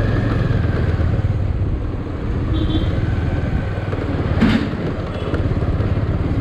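A motorcycle engine running steadily as the bike rides slowly along a street, with road and wind noise on the camera. A brief sharp noise comes about four and a half seconds in.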